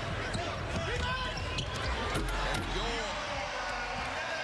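Live basketball game sound in an arena: the ball bouncing on the hardwood court, short sneaker squeaks, and a steady crowd murmur under it all.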